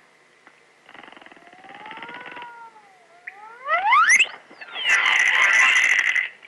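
Early cartoon sound effects: a faint wavering glide, then a loud whistle sliding quickly upward about four seconds in, then a clattering crash near the end as the skeletons fall apart into a pile of bones.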